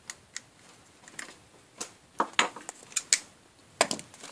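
A series of sharp, irregular metallic clicks as needle-nose pliers pull the crimped spade connectors off the terminals of an old Shopsmith Mark V on/off switch.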